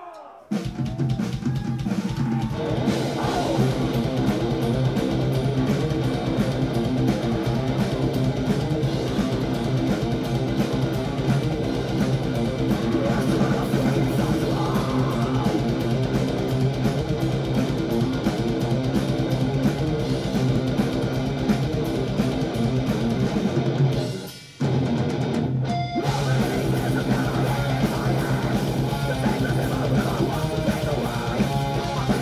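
A live rock band, with drum kit and electric guitars, plays loud and dense right after a shouted "Yeah!". The band cuts out briefly about 24 seconds in, then crashes back in.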